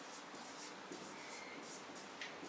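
Marker pen writing on a whiteboard: a series of faint, short strokes.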